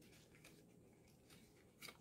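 Near silence, with faint rustles of cardstock as fingers press the glued tabs of a paper panel together.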